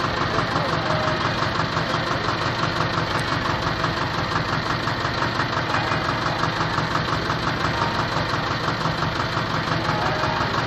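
Small air-cooled tractor engine running steadily at idle with an even, rapid beat.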